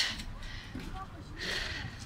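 A man's faint speech over low, steady background noise, with a soft breathy swell near the middle.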